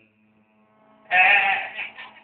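A young child's voice sings one short note about a second in, over a faint held keyboard note.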